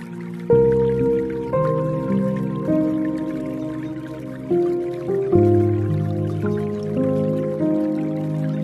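Soft, slow solo piano music in a relaxing spa style, with chords struck every second or two and left to ring. Underneath is a faint layer of dripping water.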